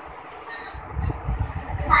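Irregular low rumbling and soft knocks of handling noise on a handheld phone microphone while clothes are moved about by hand, with a faint rustle of fabric.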